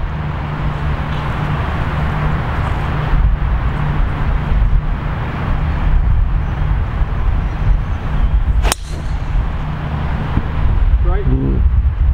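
A golf driver striking the ball off the tee: one sharp crack about two-thirds of the way through, over steady wind noise on the microphone.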